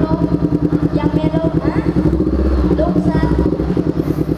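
Honda CB500X's 471 cc parallel-twin engine running at low revs with a steady, evenly pulsing beat as the motorcycle pulls away slowly.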